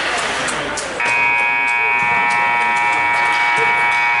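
Ice rink scoreboard horn sounding the end of the third period and the game: a loud, steady buzzing chord that starts about a second in and holds for over three seconds.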